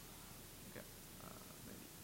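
Near silence: room tone with a steady low hum and a few faint, short sounds.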